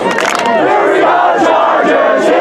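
A crowd of spectators shouting and yelling together, many voices overlapping without a break.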